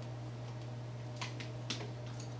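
Three light clicks in the second half from the jointed metal arm of a clip-on LED desk lamp being raised and positioned by hand, over a steady low hum.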